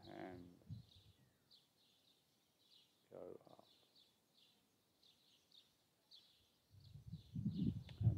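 A small bird chirping over and over, short high chirps a few times a second, faint against a quiet garden. A brief lower sound comes about three seconds in, and a louder low rumble rises near the end.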